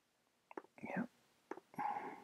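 A quiet voice murmuring or whispering under the breath, two short mumbled sounds with no clear words, along with a few faint clicks.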